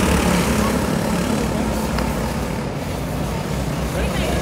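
Racing go-kart engines running as the karts lap a dirt oval, a steady drone that eases off slightly as they pull away.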